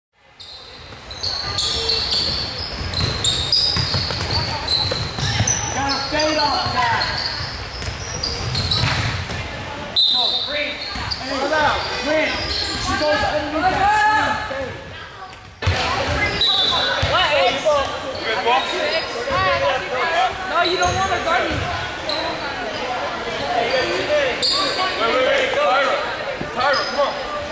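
Indoor basketball game in a gymnasium: a ball bouncing, short sneaker squeaks on the court, and several players' voices calling out, echoing in the hall. The sound cuts abruptly twice, about ten and fifteen seconds in.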